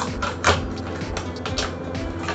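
Clear plastic blister packaging of a lavalier microphone crinkling and clicking as it is handled and opened, with the sharpest crackle about half a second in, over background music.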